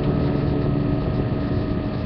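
Guitar chord held and ringing out through distortion, a steady drone of several notes slowly fading.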